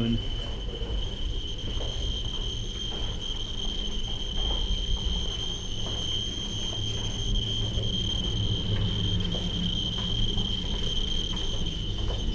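Handheld Geiger counters sounding: a steady high-pitched tone held throughout, with scattered faint clicks, over a low rumble.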